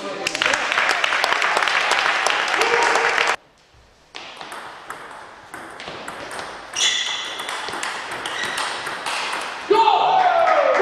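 Table tennis ball clicking sharply off bats and table during rallies in a large hall, with loud voices and shouting over the first few seconds. The sound cuts out suddenly for under a second, and a loud shout comes near the end.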